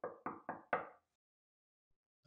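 Knuckles knocking on a door: a quick row of four knocks, about four a second, ending about a second in.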